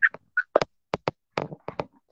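A string of about seven short, sharp clicks or taps, irregularly spaced over about a second and a half.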